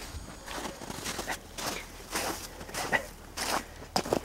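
Footsteps of a person walking on snow, a steady run of steps about two to three a second.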